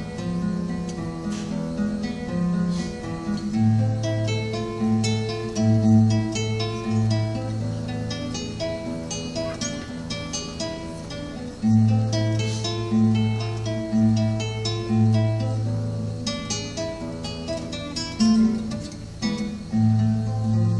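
Acoustic guitar played solo, a picked melody over strong repeating bass notes.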